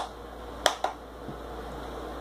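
A child's hand claps: one sharp clap right at the start, then two more in quick succession a little under a second in.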